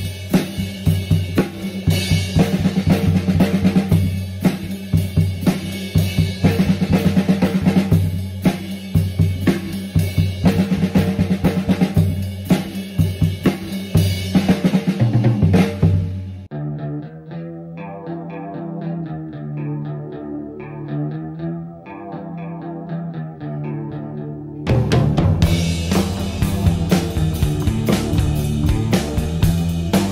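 Acoustic drum kit played at tempo, steady snare and bass-drum strokes under repeated crash-cymbal hits. About sixteen seconds in the drums stop and a recorded guitar riff plays on its own. The drums come back in over the recording a few seconds before the end.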